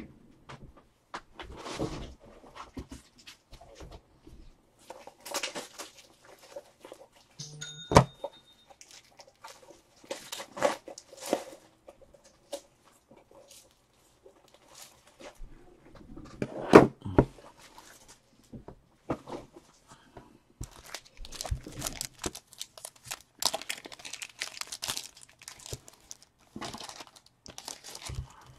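Irregular rummaging and handling: scattered clicks, knocks and rustling as packs of plastic card top loaders are fetched and set down, with a sharp knock about 8 seconds in and another near 17 seconds.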